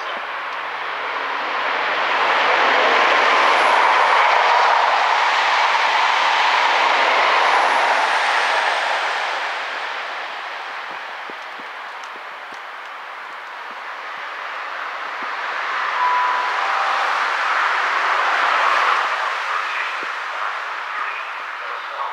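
Train running on the line through the station: rail noise swelling for several seconds, easing off, then building again. About three-quarters of the way through comes a short two-note tone, high then slightly lower.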